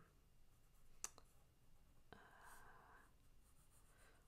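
Near silence, with a faint click about a second in and another just after two seconds.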